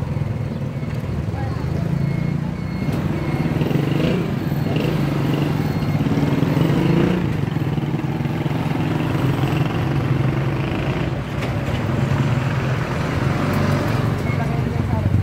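Street traffic: motorcycle and car engines passing close by, with a steady low engine hum throughout and a small truck drawing near at the end.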